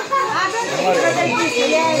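Lively chatter of many voices at once, children among them, talking and calling over one another so that no single speaker stands out.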